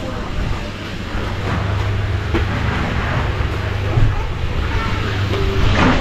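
Background chatter of people over a steady low hum and general outdoor noise.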